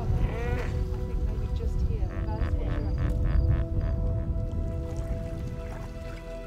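Background music with long held tones over a hippopotamus calling. A wavering call comes at the start, then a quick run of about six short pulsed honks from about two seconds in.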